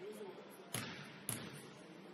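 Basketball dribbled twice on a hardwood gym floor at the free-throw line, two sharp bounces about half a second apart with a short echo from the gym after each.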